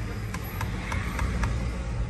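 Low, steady rumble of a car's engine and road noise heard from inside the cabin as the car moves slowly, with a few faint ticks about three a second.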